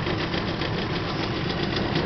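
18 hp two-stroke outboard motor running steadily at low speed, with a rapid, even beat.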